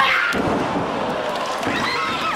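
A wrestler slammed onto the ring mat with a sharp thud at the very start, followed by a crowd's sustained high-pitched shouting and yelling.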